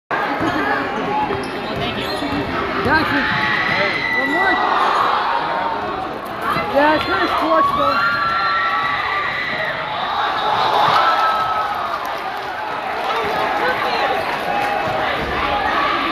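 Indoor basketball game heard from the bleachers: a crowd of students chattering and cheering, a basketball bouncing on the court, and short sneaker squeaks on the hardwood floor.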